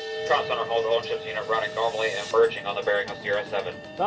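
Voices talking indistinctly over background music with a steady held tone.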